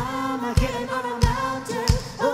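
Live band: several voices singing together in harmony over a kick drum beating about every two-thirds of a second, with a strong kick hit at the very start.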